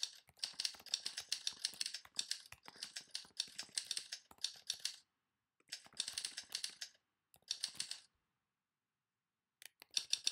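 Calmly Writer's simulated typewriter sound, one key click per typed character, in quick runs of clicks with short pauses between words. The runs stop near the middle, start again twice, and go silent for a couple of seconds before a last few clicks near the end.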